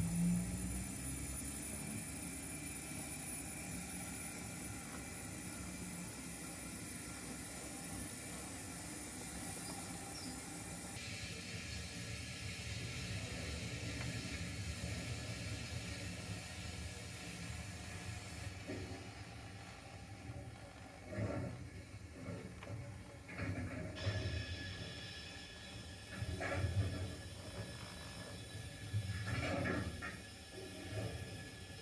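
O gauge model train running on the track: a steady low rumble of wheels and motor, then a string of short clattering knocks through the last third.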